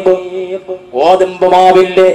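A man chanting in Arabic in a melodic, drawn-out voice with long held notes. The voice drops away for most of the first second, then comes back in with a rising note that it holds steady.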